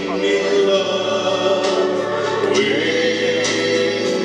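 A young man singing into a microphone over instrumental accompaniment, in slow, long-held notes.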